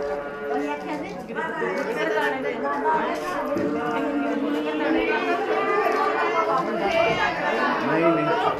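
A group of people chatting, many voices talking over one another.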